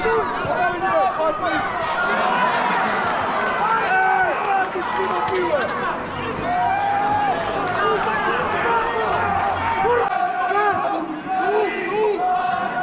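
Many voices shouting and calling over one another from the rugby sideline crowd and players. The hubbub is steady, with no single voice standing out.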